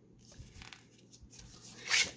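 Paper rustling as a scratch-off lottery ticket is moved and set down on a countertop, loudest near the end.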